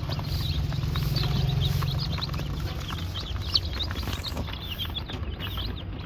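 A boxful of newly hatched Rhode Island Red and Black Australorp chicks peeping, many short high chirps overlapping continuously.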